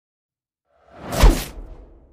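A single whoosh sound effect that swells in about a second in, sweeps down in pitch and trails away, laid over an animated title card.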